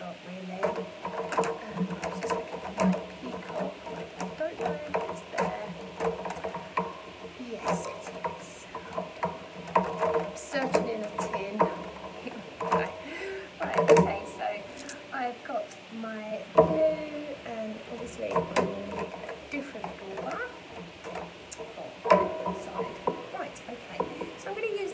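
Indistinct voices talking, with scattered light clicks and taps as craft materials are handled.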